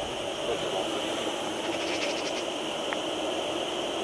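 Steady hiss of steam escaping from a live-steam model Ivatt 2-6-2 tank locomotive standing in steam, with a few faint clicks around the middle.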